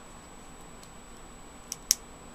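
Faint steady hiss, then two quick sharp clicks close together near the end.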